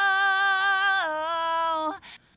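A woman's unaccompanied recorded vocal take, holding the last word "control" on one long sung note that steps down slightly about a second in and cuts off abruptly just before the end.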